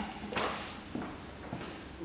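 Footsteps at a walking pace on a hard floor: three or four steps. The first and sharpest comes about a third of a second in, and the later ones fade.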